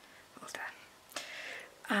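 A woman's voice, soft and breathy: two short half-whispered utterances, then a voiced word beginning near the end.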